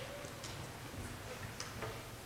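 Quiet room tone with a few faint, irregular clicks and ticks from sheet music and papers being handled at a grand piano.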